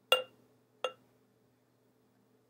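Two short glass-on-glass clinks about three quarters of a second apart, each with a brief ring: the spout of a glass measuring cup knocking against the rim of a glass mason jar as the cup is tipped to pour.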